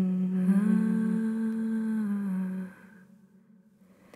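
A voice humming one long held note that steps up slightly in pitch shortly after it starts, then fades out a little under three seconds in, leaving near silence.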